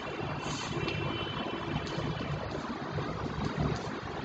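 Chalk tapping and scraping on a blackboard as plus signs are written, over a steady rumbling background noise.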